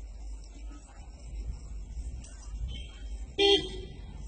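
A vehicle horn gives one short toot near the end, over a steady low rumble.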